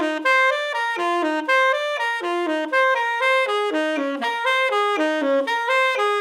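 Solo tenor saxophone playing a short, repetitive figure over and over, a steady stream of separate notes in its middle register.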